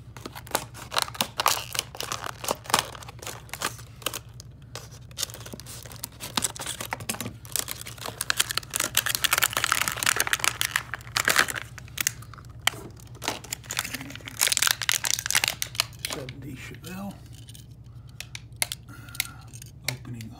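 Clear plastic blister packaging of a die-cast toy car being crinkled, torn and pried open by hand, in a long run of irregular crackles and sharp snaps, over a steady low hum.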